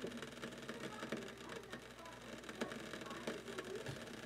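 Water heating in the glass lower bowl of a Bodum Pebo vacuum coffee maker, not yet at the boil: faint, irregular ticking and crackling as small bubbles form and collapse against the glass.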